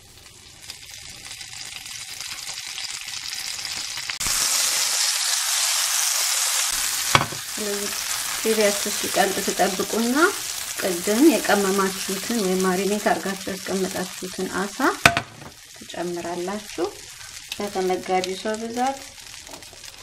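Hot fat sizzling in a non-stick frying pan. It builds over the first few seconds and is loudest a few seconds in. Through the second half a wavering pitched sound comes and goes over the steady sizzle.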